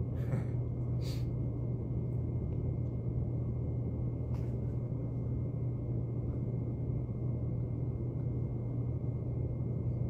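Steady low hum and rumble of room background noise, with a few faint soft clicks.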